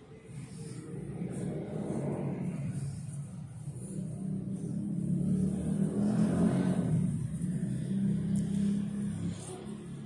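An engine running, its hum growing louder toward the middle and fading away near the end, like a vehicle passing.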